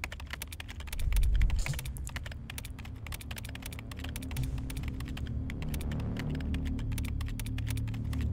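Fast typing on a computer keyboard, a quick irregular run of keystroke clicks, over a low steady drone with a low swell about a second in.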